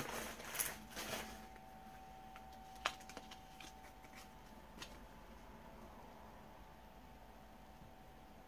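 Packing material rustling as an item is unwrapped for about the first second and a half, then quiet room tone with a faint steady hum and a single sharp click about three seconds in.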